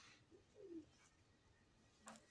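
Faint pigeon cooing: one short, falling coo about half a second in.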